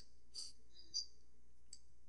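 Three faint, short clicks over low background noise.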